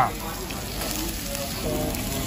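Steak sizzling on a hot iron sizzling platter: a steady hiss of fat frying against the metal.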